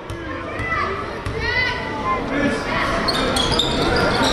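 Basketball bouncing on a hardwood gym floor at the free-throw line, with several knocks, over the chatter of voices echoing in a large gym. High, shrill voices join near the end.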